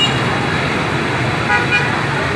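Dense street traffic: many motorbikes and cars running past in a steady din, with a short horn toot about one and a half seconds in.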